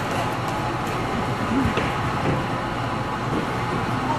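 Steady crowd noise in a large gymnasium as an audience gets to its feet: shuffling and low background voices, with no single sound standing out.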